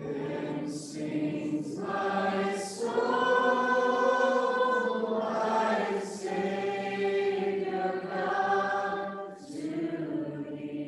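Congregation singing a worship song together to guitar accompaniment, with noticeable echo from the room. The singing comes in phrases with short dips between lines.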